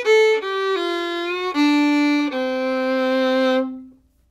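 Solo fiddle, bowed, playing the end of a two-bar bluegrass lick over the D (five) chord. The notes step down, sliding into an F sharp, then open D, and close on a long held C natural, the flat seven, which stops shortly before the end.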